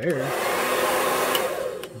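Remington handheld hair dryer running with a steady rush of air, a good amount of air, then switched off near the end.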